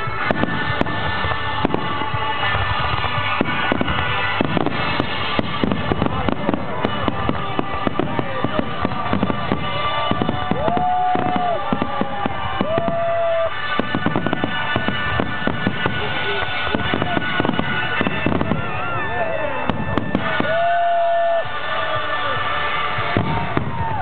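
Fireworks barrage: a dense, unbroken run of aerial shell bangs and crackles, with music playing under it. A few long whistles, each about a second, sound over the bangs.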